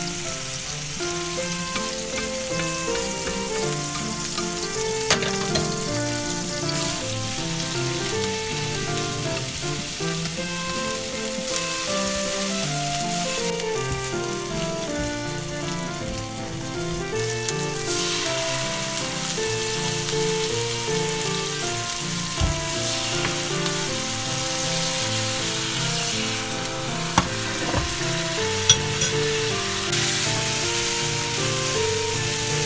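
Thin-sliced pork, and then chopped green onion, sizzling in oil in a nonstick frying pan as they are stir-fried. The sizzle grows louder a little past halfway. A few sharp clicks come from the chopsticks and spatula knocking the pan.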